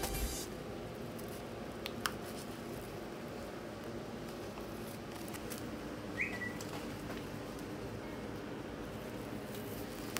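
Quiet room tone with a steady low hum, broken by a couple of faint clicks about two seconds in and a short, high chirp that rises then drops about six seconds in.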